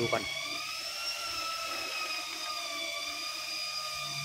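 A small electric motor whining steadily: several high thin tones held together and drifting slightly in pitch.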